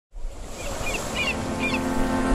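Ocean surf washing, rising in level after a silent first moment, with a bird chirping about four times. A steady held musical chord comes in underneath.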